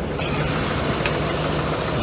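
CNG-fuelled 2001 Dodge Ram Wagon B3500 van engine idling steadily after a jump start.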